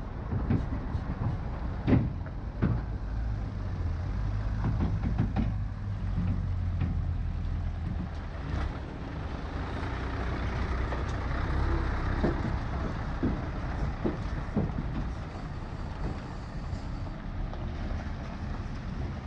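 Heavy tipper semi-trailer trucks running slowly close by, a steady low engine rumble with scattered sharp knocks and rattles from the trucks over rough gravel roadbed.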